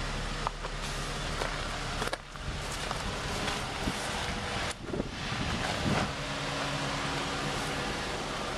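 Steady outdoor background noise with two brief knocks, about two and five seconds in.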